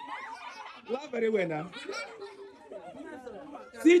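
Children's voices laughing and talking, with a loud shouted call near the end.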